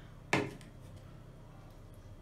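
A single sharp clack of kitchenware, a spoon knocking against a steel mixing bowl, about a third of a second in, followed by low room noise.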